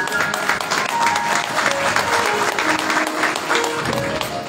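Rhythmic hand clapping over instrumental music that holds single sustained notes, changing pitch now and then.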